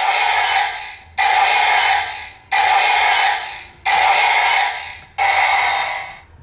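DX Kyuren-Oh toy robot's electronic light-up sound effect from its small built-in speaker, triggered with the Tate Kyutama set in its chest. One burst of sound plays five times in a steady rhythm, each starting suddenly and fading over about a second.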